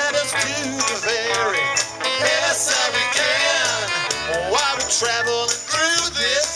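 Live band playing an upbeat song: a man singing over electric bass and a drum kit.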